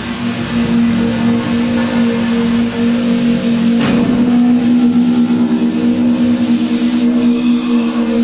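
Improvised music for percussion and live electronics: a steady pitched drone with a fainter tone an octave above, over a noisy hiss, and one sharp strike about four seconds in.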